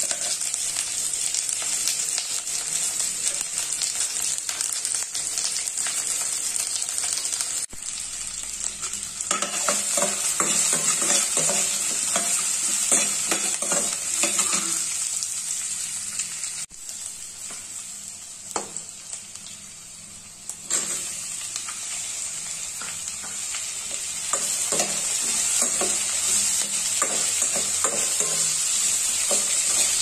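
Onions and cashews frying in a stainless steel kadai, with a steady sizzle. From about a third of the way in, a steel spoon scrapes and clinks against the pan as they are stirred. The sizzle dips quieter for a few seconds past the middle.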